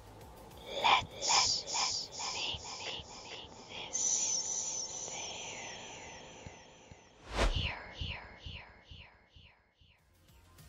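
A high-pitched, garbled cartoon voice: a string of short syllables, each bending in pitch, at about two a second. About seven and a half seconds in there is a sudden loud burst, followed by more short falling syllables.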